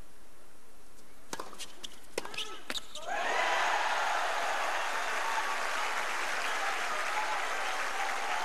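A quick run of about six tennis ball strikes and bounces during a rally, then about three seconds in the crowd erupts into loud cheering and applause with shouts as the break point ends.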